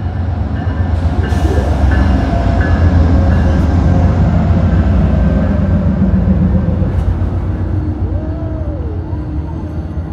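Amtrak passenger train passing close by, a steady low rumble of wheels on rail that swells to its loudest in the middle and eases off near the end.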